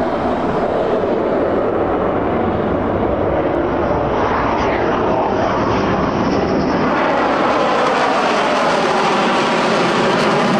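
F-15E Strike Eagle's twin turbofan engines sounding loud and steady as the jet makes a low pass overhead. The tone sweeps about halfway through as the aircraft goes by.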